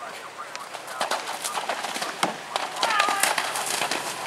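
Horse landing in and moving through a cross-country water jump: a run of splashes and hoof strikes in the water that grows louder from about a second in.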